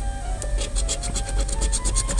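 A large coin-like scratcher rubbing quickly back and forth over the latex coating of a paper scratch-off lottery ticket, giving a rapid run of raspy scraping strokes.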